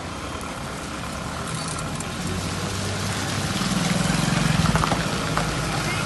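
A motor vehicle passing on the wet road: an engine hum and tyre hiss growing louder to a peak about four and a half seconds in, then easing.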